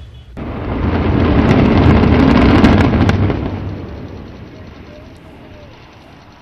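Controlled demolition of a high-rise apartment tower: a run of sharp explosive cracks inside a deep rumble of collapse. The sound builds over about two seconds and then dies away.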